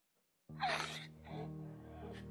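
A woman's sharp, gasping sob about half a second in, then a smaller one, as slow background music with held notes begins.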